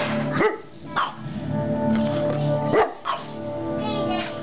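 A large dog, a Saint Bernard, giving a few short barks, the loudest about a second apart near the start and another near the end. Steady music from a television plays underneath.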